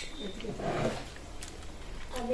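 A man's short, low, breathy vocal sound, a murmur without words, about half a second in, after a sharp click at the very start.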